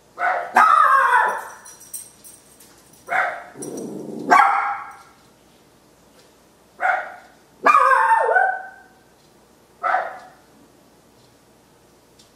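A small dog barking in short clusters, about seven barks with pauses of a second or two between, several of them falling in pitch.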